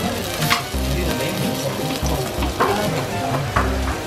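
Okonomiyaki sizzling on a hot steel teppan griddle, with a few short scrapes of a metal spatula against the griddle.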